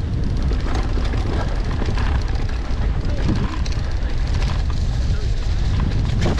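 Wind buffeting the microphone of a camera on a mountain bike riding fast down a dirt flow trail: a steady low rumble with scattered clicks and rattles.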